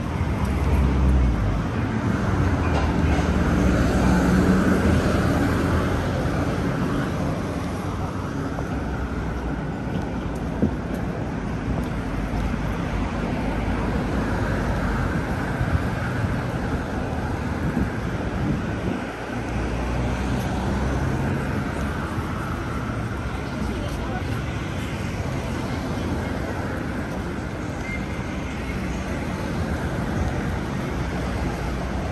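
Busy city street traffic: cars and other vehicles running and passing, with a steady low rumble that is louder in the first few seconds. Indistinct voices of passers-by are mixed in.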